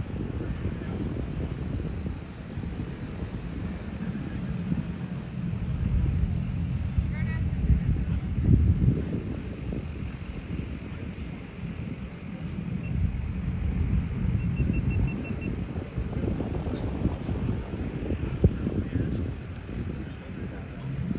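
Low, uneven drone of propeller-driven jump planes, swelling louder twice and easing off between.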